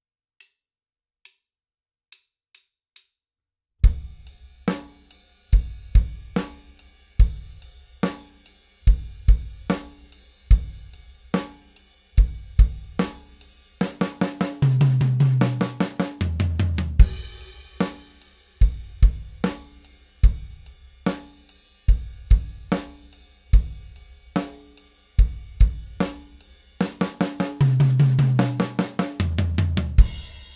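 Drum kit playing a beginner rock groove with the right hand on the ride cymbal and the bass drum on beat one, beat three and the and of three; it starts about four seconds in after a few faint clicks. Twice the groove breaks into a fill of fast even sixteenth-note hits on a low drum, then resumes with a loud crash-like hit.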